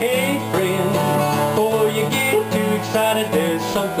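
A man singing a country song, accompanied by his own steel-string acoustic guitar.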